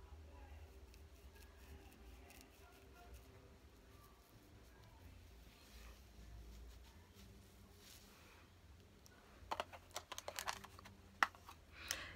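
Near silence with faint handling while a small brush dabs powder along a wig's part, then a quick run of light clicks and taps near the end as the plastic powder compact and brush are handled and put down.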